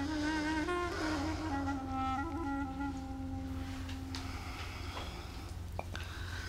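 Soft background score: a slow, sustained melody that descends and settles on a long held low note, fading out about four seconds in. A couple of faint clicks come near the end.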